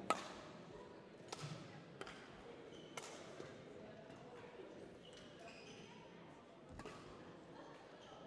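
Badminton racket strings striking a feather shuttlecock: a sharp crack at the start, then further hits about a second apart and one more near the end, over the murmur of voices in a large hall.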